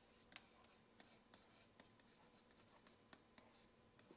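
Faint handwriting strokes of a stylus on a digital writing surface: a string of light, irregular ticks and scratches over a low background hiss.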